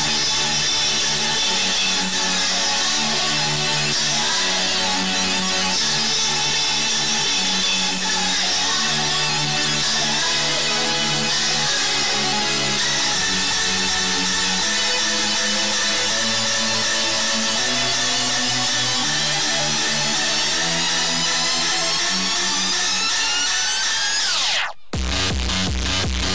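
Electronic dance music with a stepped bass line; about halfway through a long rising sweep builds, cuts out for a moment near the end, and then a steady heavy beat comes in.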